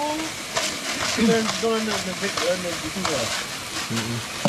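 Steak sizzling in a pan, a continuous hiss with fine crackles, under people's voices.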